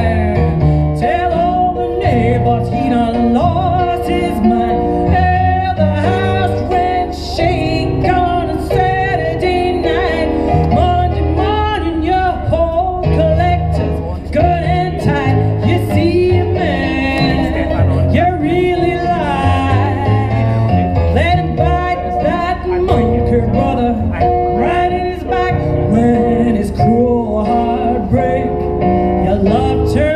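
A live blues song from a duo, sung over keyboard accompaniment and amplified through stage PA speakers, running continuously at a steady loudness.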